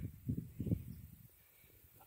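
A few faint, low thumps in the first second, then near silence.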